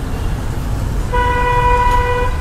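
Steady road-traffic rumble. A little past halfway, a vehicle horn sounds one steady, held note.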